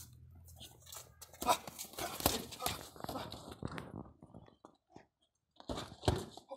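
A quick flurry of sharp knocks and scuffs from boxing gloves landing and feet shuffling on dirt during sparring, starting about a second and a half in and lasting about two seconds, with a few more knocks near the end.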